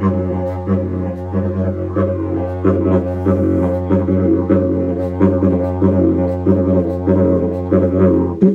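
A 135 cm yidaki (traditional didgeridoo) in F# with a natural mouthpiece, played as a steady low drone without a break, with quick rhythmic pulses and accents in its overtones.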